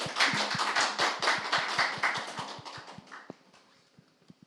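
A small group applauding, the clapping thinning out and dying away after about three and a half seconds.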